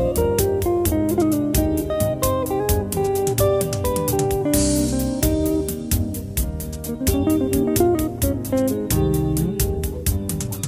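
Guitar music: a lead guitar plays a melody with sliding, bending notes over a bass line and a steady beat.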